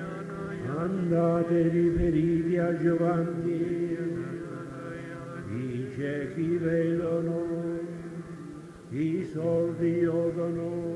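Voices of a congregation at Mass chanting a sung prayer in long held notes. There are three phrases, each sliding up into its note, then swelling and fading.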